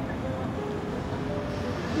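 Steady outdoor background noise, a low even rumble with no clear event in it.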